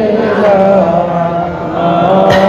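A man chanting melodically into a microphone, drawing out long, wavering notes, in the style of devotional Islamic recitation leading into zikir.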